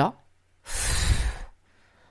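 A person blowing out one long breath, the puff of blowing up a balloon, lasting under a second.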